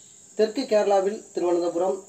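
A voice speaking in Tamil, starting about half a second in, over a steady high-pitched whine in the background.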